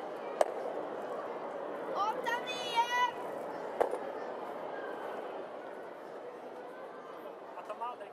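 Granite curling stones striking each other: a sharp clack about half a second in and another near four seconds, over a steady hum of arena murmur.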